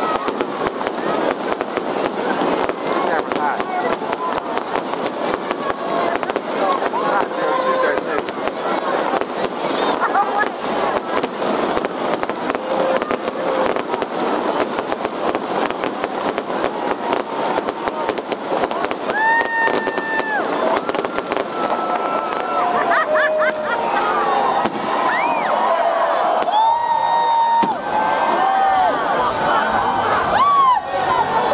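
Aerial fireworks crackling and popping in a rapid, dense stream, over a crowd shouting and cheering. The crackle thins out after about twenty seconds, and a few long steady tones sound in the last ten seconds.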